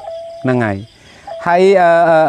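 A monk's voice in drawn-out, sung-like tones: a short falling phrase, then a long held note that wavers slightly. Crickets chirp faintly in the background.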